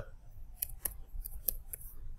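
Computer keyboard keys clicking as a short word is typed: about five sharp, unevenly spaced keystrokes.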